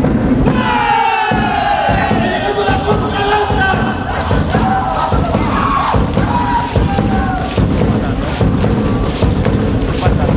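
Music for a contradanza folk dance, with a crowd cheering and shouting over it.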